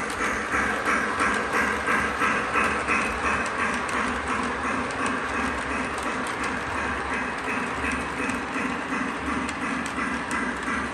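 O gauge three-rail model train running on track, its freight cars and caboose rolling past with a steady rhythmic clatter over a low running hum, easing off a little in the second half.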